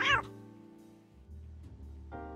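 One short cat meow at the very start, its pitch rising and falling, followed by soft background music.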